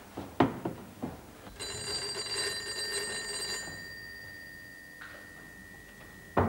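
Telephone bell ringing once for about two seconds, leaving a faint lingering tone. It is preceded by a few sharp knocks, the loudest sound here.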